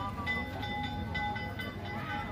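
A metal bell struck over and over, about two strikes a second, each strike ringing on in several clear tones, over crowd chatter.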